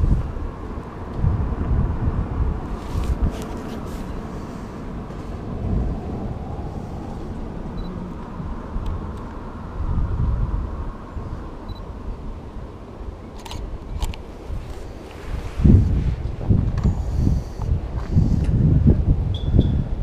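Wind buffeting the microphone in gusts, strongest near the end, over a steady background hiss, with a few brief clicks about three seconds in and again near the middle.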